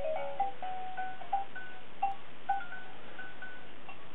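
Rainforest baby activity gym playing its electronic chime tune, set off by the baby shaking the hanging toy: a string of clear bell-like notes, about two a second, thinning out in the second half.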